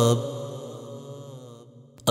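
The end of a sung line of a devotional manqbat: the man's held note stops just after the start and its echo fades away over the next second and a half, leaving a faint low hum.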